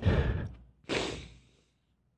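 A man crying, drawing two heavy, shaky breaths: a sigh with a little voice in it, then a second, airier breath about a second in.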